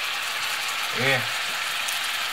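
Kupaty sausages sizzling steadily in hot fat in a frying pan, an even hiss.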